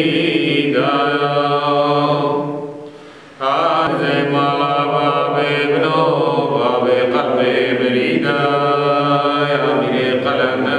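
A group of men's voices chanting a religious hymn together in long held tones. The chant breaks off briefly about three seconds in, then resumes.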